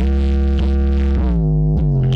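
Electronic dance remix played loud through a giant stacked Strom Audio sound system with 32 subwoofers, during a sound check. A heavy, unbroken sub-bass runs under a synth line whose notes slide down in pitch several times.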